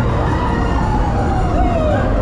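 Steady low rumble of a spinning boat ride in motion, with several wavering, sliding tones over it.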